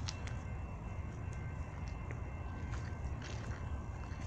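Low, steady rumble of an approaching Norfolk Southern freight train's GE diesel locomotives (Dash 9s and an ES44), still some way off, with faint steady high tones above it.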